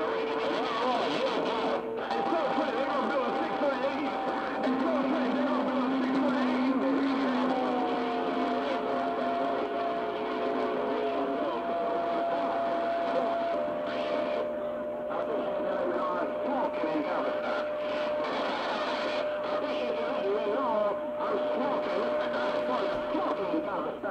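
CB channel 6 AM (27.025 MHz) received on a shortwave radio during skip: many distant stations talking over one another with static, and several steady whistles from clashing carriers that come and go, one sliding down in pitch about a third of the way through.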